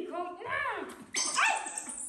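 Baby macaque giving a run of high, wavering cries that rise and fall in pitch, the loudest and harshest call about a second in.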